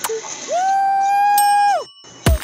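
One held electronic tone, steady in pitch, lasting about a second and a half. It rises in at the start and slides down at the end, set in a clicky electronic music or sound-effect track.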